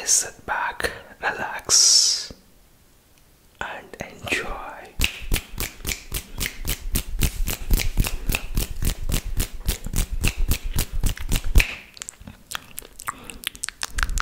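Close-miked wet ASMR mouth sounds: soft lip and tongue noises and a brief hiss, then a fast even run of sharp mouth clicks, about six a second, lasting several seconds.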